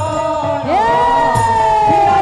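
Devotional kirtan music: a steady drone under low khol drum strokes about every one and a half seconds, with a long high note that sweeps up about a third of the way in and is held, sagging slightly.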